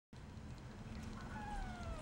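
A Persian cat gives a faint, drawn-out meow that slowly falls in pitch, starting a little over a second in, over a low steady room hum.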